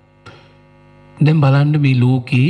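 A steady electrical hum with many overtones runs on the recording. A man's speaking voice comes back in about a second in.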